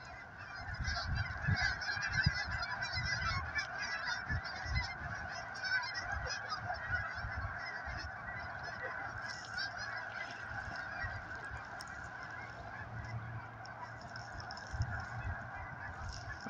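A large flock of geese in flight, honking: many calls overlap into one continuous chorus, a little louder in the first few seconds.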